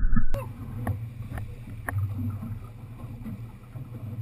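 Boat motor running under way through rough water, with the aluminium hull slapping hard on waves a few times in the first two seconds and wind on the microphone. A short loud low thump right at the start.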